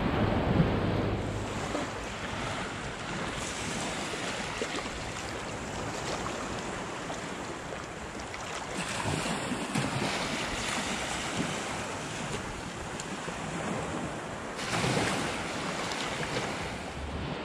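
Shallow seawater sloshing and lapping around a wader's legs, with wind noise on the microphone. An even rushing sound that swells a little past the middle and again near the end.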